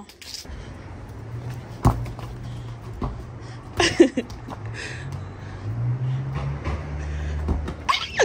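Soccer ball kicked on a concrete sidewalk: a sharp thump about two seconds in and another about four seconds in, the second with a short cry, over a steady low rumble.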